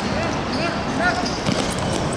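Live sound of a football game on a hard outdoor court: the ball thudding off players' feet and the surface, with a few short shouts from players over a steady background hiss.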